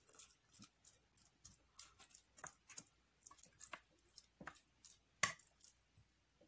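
A metal spoon mixing canned tuna with chili powder on a plate: faint, irregular scrapes and light clicks of the spoon against the plate, with one sharper clink about five seconds in.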